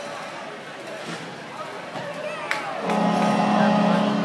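Frozen turkey knocking into the bowling pins on the ice with one sharp knock about two and a half seconds in, over arena crowd chatter. Just after, arena PA music starts loudly with a steady held tone.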